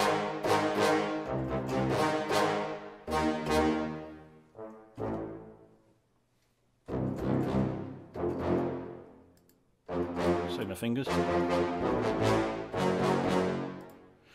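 Sampled orchestral brass ensemble from Project SAM's Orchestral Essentials brass staccato patch, played as phrases of short, detached staccato chords. The playing stops briefly twice and ends just before the close.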